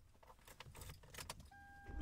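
Near silence: faint scattered clicks over a low hum. A steady high tone enters near the end.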